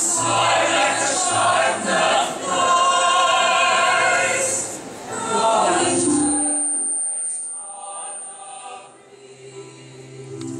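Mixed choir of men's and women's voices singing together in harmony, loud for about the first six seconds, then dropping away to a much softer passage.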